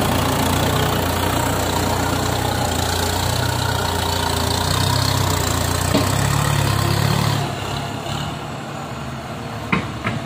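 Kubota M9540 tractor's diesel engine running steadily as the tractor works through mud, and it gets quieter about seven and a half seconds in.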